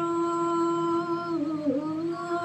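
A woman singing one long held note, close to a hum, with a short dip in pitch about one and a half seconds in.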